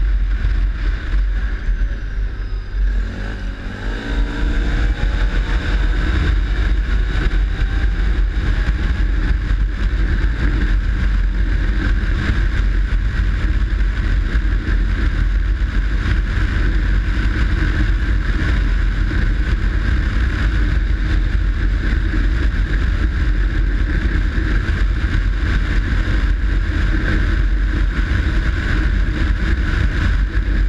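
ATV engine running steadily at speed. About three seconds in it eases off briefly, then its pitch climbs as it accelerates again and settles into a steady run.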